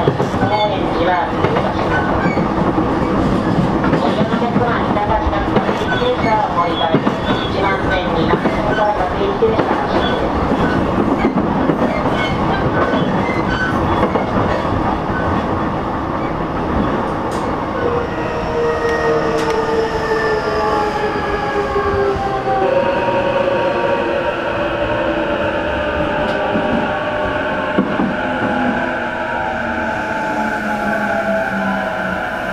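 Interior sound of the JR East E233-series motor car MOHA E233-9 running on rails, with a dense rolling rumble and wheel clicks. From about eighteen seconds in, a whine from the traction motors and inverter sets in and falls steadily in pitch as the train slows under braking.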